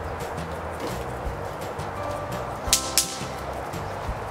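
Two sharp cracks about a third of a second apart, near the three-quarter mark: bang snaps (snap pops) thrown onto concrete and popping. Low background music runs underneath.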